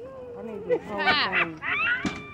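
A person's voice, pitched and rising and falling in arcs, without clear words.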